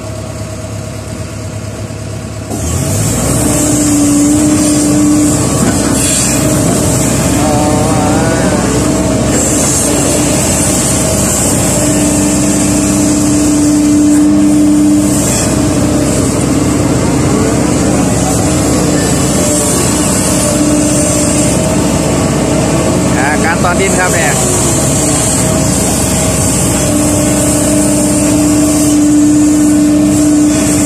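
Kobelco SK140 excavator's Mitsubishi D04FR four-cylinder diesel rising from idle to working revs about two seconds in, then running loud and steady under load as the arm and bucket dig mud. A pitched hum from the machine comes and goes as the arm works.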